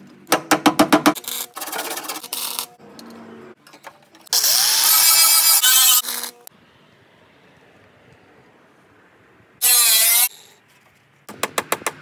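Sped-up, choppy bodywork sound: quick runs of clicking and tapping, and two loud bursts of an angle grinder working the steel rocker panel, the longer one rising in pitch as it spins up about four seconds in, a shorter one near the end.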